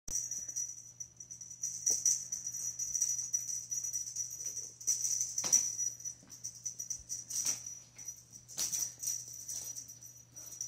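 A small bell jingling in short, irregular flurries as cats bat at a jiggled feather wand toy.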